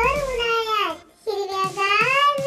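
A high, child-like voice singing two long, sliding notes, with a short break about a second in.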